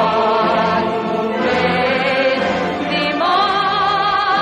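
A woman singing solo with a choir, in long held notes with a wide vibrato; about three seconds in the melody steps up to a higher sustained note.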